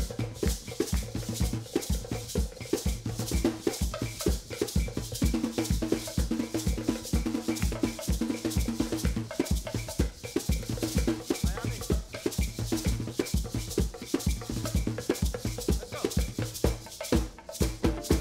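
Garifuna band music without singing: hand-played Garifuna drums and maracas keep a fast, dense rhythm over steady bass guitar notes.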